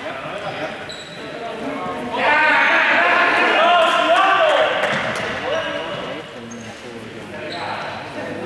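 Several young people's voices shouting and calling out at once in a large echoing sports hall, loudest from about two seconds in to about five seconds, over a steady hubbub, with a ball bouncing on the court floor.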